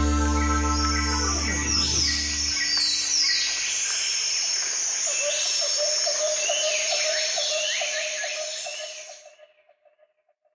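Outro of a cumbia track: a held chord dies away in the first couple of seconds while bird-like chirps and whistles take over, joined by a steady pulsing insect-like trill. Everything fades out shortly before the end.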